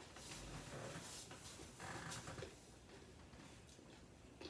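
Faint eating sounds of a woman chewing a mouthful of nachos, with two long breathy rushes in the first half, the first longer than the second. Then it goes quieter.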